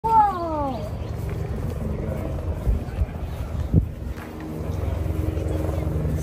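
A heavy diesel engine running at a steady low hum, with a sharp thump about four seconds in. At the very start a short voice-like call falls in pitch.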